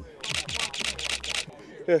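Camera shutter firing in a rapid burst, about eight frames a second for just over a second.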